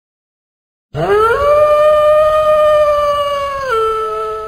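A single loud animal howl, starting about a second in: it glides up in pitch, holds a steady note for about two seconds, then steps down to a lower note near the end.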